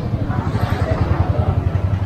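Motorcycle engine running at low speed close by, a rapid low throb.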